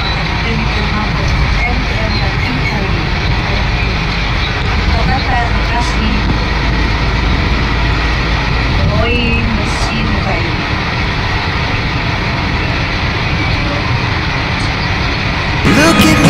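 Steady road and engine noise heard from inside a moving vehicle's cabin, a continuous low rumble, with faint voices now and then.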